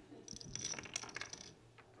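Poker chips clicking against one another as a player handles his stack: a quick run of light clicks for about a second, then a couple of single clicks.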